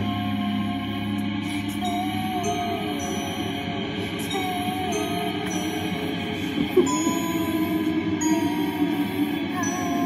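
Music playing from a kitchen under-cabinet radio: a soft passage with a wavering melody and short, high, chime-like bell notes sounding one after another.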